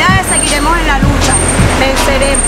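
A woman's raised, emphatic voice over a steady low rumble.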